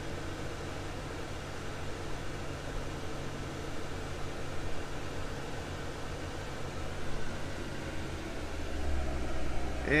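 Steady running sound of a BMW 633 CSi straight-six idling with its air conditioning on and the blower running, a low hum under a steady hiss, heard from inside the car. The low hum grows somewhat louder near the end. The system, retrofitted to R134a, is cooling and holding about 40° supply air.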